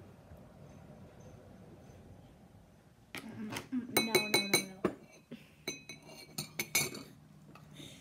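A drinking glass clinking against other glassware or cutlery: a quick run of sharp clinks with a brief bright ring, starting about three seconds in and stopping about a second before the end.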